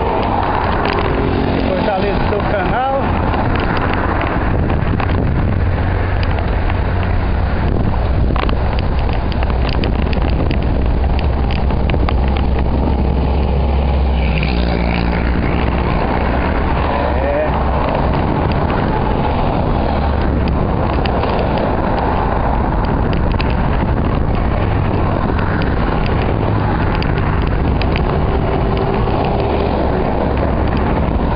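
Steady wind rush on a camera microphone riding along on a moving bicycle, mixed with the noise of cars, a van and motorcycles passing in the adjacent highway lanes.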